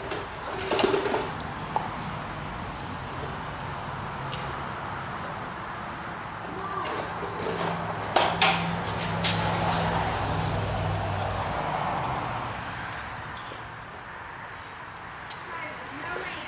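A steady high-pitched insect drone, with a few sharp clicks and knocks of tools and parts being handled about eight to nine seconds in, over a low hum.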